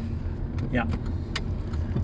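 Steady low rumble of a car's engine and tyres heard inside the moving car's cabin, with a single short click about halfway through.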